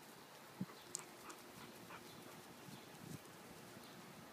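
Quiet outdoor ambience, with a soft thump and then a sharp click about a second in, and a few fainter ticks after.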